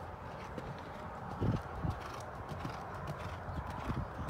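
Hooves of a cantering horse on sand arena footing, with two heavier thuds about a second and a half in.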